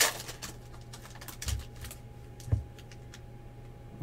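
Foil trading-card pack wrapper crinkling as it is pulled open, then light clicks and taps of cards being handled, with two soft thumps about one and a half and two and a half seconds in.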